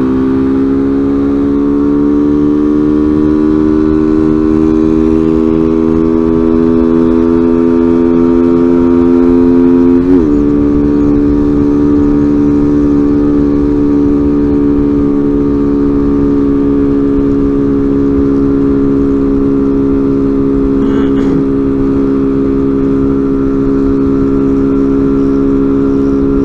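Honda motorcycle engine running under throttle at highway speed, its note rising slowly for about ten seconds, dipping briefly, then holding steady, with wind rushing over the helmet-mounted camera.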